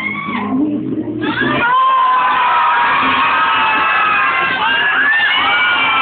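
A crowd of excited young women shrieking and cheering, many high voices overlapping in long, held and gliding cries that grow denser about two seconds in.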